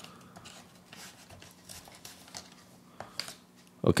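Faint rustling and scattered light clicks of cardboard packaging and a cable being handled as a coiled cable is pulled out of its box, over a faint steady hum.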